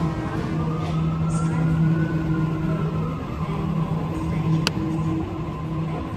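Sydney Trains double-deck electric train pulling away from the platform: its traction motors whine in a tone that rises slowly and then falls, over a steady low electrical hum. A single sharp click comes near the end.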